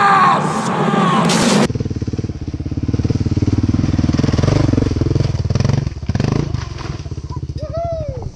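A man's loud shout over film music, cut off abruptly under two seconds in, then a single-cylinder 650 dual-sport motorcycle engine working hard up a loose-rock climb, its revs dipping briefly about six seconds in.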